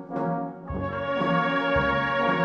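A band with brass to the fore playing a Maltese funeral march (marċ funebri). Short separate notes give way to a sustained full chord just under a second in, and low bass notes come in near the end.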